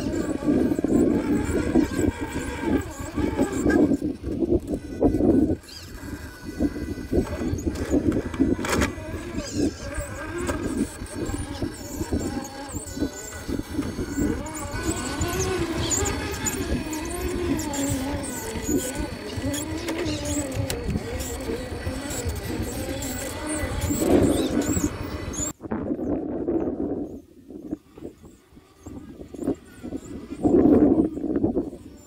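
Radio-controlled scale crawler's electric motor and gearbox whining as it crawls over rock, the sound shifting with the throttle; it cuts off abruptly about three-quarters of the way in.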